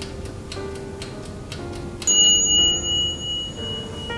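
Mechanical timer of an Oxone electric oven ticking, then its bell dings once about halfway through and rings out for over a second as the 30-minute bake time runs out. Soft background music plays underneath.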